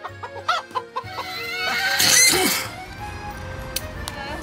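Bird calls: short pitched calls in the first second, then a loud, harsh call that rises from about a second in and peaks around two seconds before dying away.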